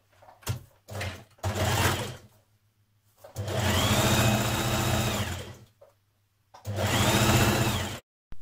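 Electric domestic sewing machine stitching in stop-start runs: three short bursts in the first two seconds, then a run of over two seconds and a shorter one near the end, the motor whine rising as it speeds up and falling as it slows to a stop.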